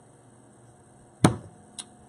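Quiet room tone, broken about a second in by a single sharp click or knock, with a much fainter click near the end.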